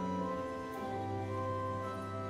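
Slow, sustained instrumental music, held chords with a change of chord and a low bass note coming in about halfway through.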